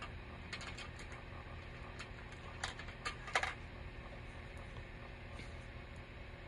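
Scattered light clicks and taps of small objects being handled, most of them in the first three and a half seconds, over a steady low hum.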